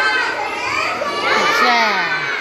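A roomful of young children's voices calling out together, many high voices overlapping.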